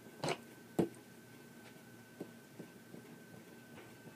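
Quiet handling of polymer clay being rolled out on a work surface: two light taps in the first second, the second one louder, then a few faint ticks, over a faint steady high whine.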